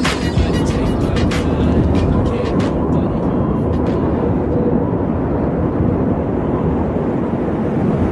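A steady, loud low rumble with no clear pitch, with a few sharp clicks and the fading tail of the previous hip hop track in the first three seconds or so.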